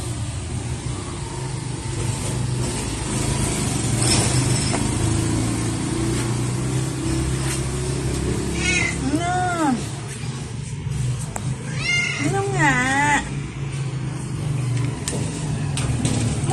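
Ginger cat meowing: one drawn-out meow about nine seconds in, then a couple more wavering meows around twelve to thirteen seconds. A steady low hum runs underneath throughout.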